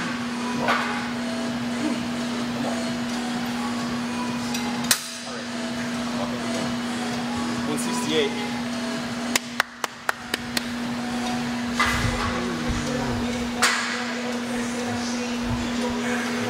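Scattered sharp metallic knocks and clanks from gym equipment over a steady low hum. Several come in a quick cluster about halfway through.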